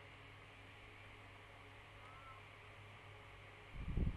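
Near silence: faint steady low hum and hiss of room tone, with a soft low thump near the end.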